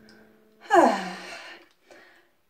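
A woman's loud, breathy sigh a little way in, falling in pitch as it fades out.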